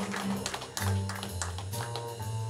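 Live jazz trio playing: a double bass plucks long low notes under piano and vibraphone, with a new bass note about every three-quarters of a second.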